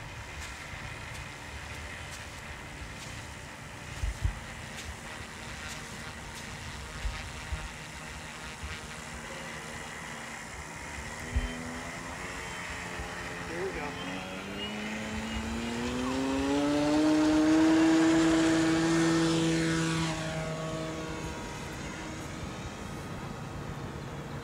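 Electric RC floatplane's motor and propeller: a faint whine while it taxis on the water, then rising in pitch and loudness as the throttle opens for the takeoff run. It is loudest a little past the middle, then drops in pitch and fades as the plane passes and climbs away.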